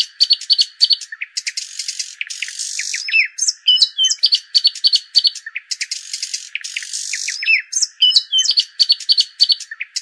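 Songbird chirps and quick trills, high-pitched with no low sound under them, in a pattern that repeats every few seconds like a looped bird-song sound effect.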